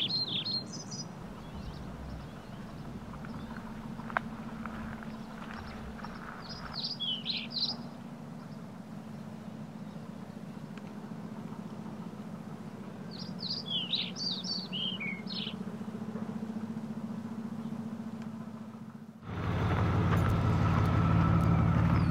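Small songbirds chirping in three short bursts several seconds apart, over a faint steady low hum. About three seconds before the end a louder, steady, engine-like hum comes in.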